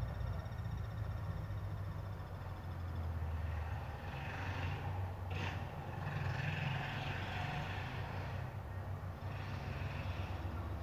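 Street traffic with a steady low rumble and a faint high whine in the first few seconds. A motorcycle passes close by about halfway through, loudest near the middle, then fades.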